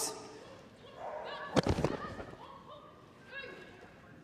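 A large indoor arena with faint voices, and one sharp thud about a second and a half in.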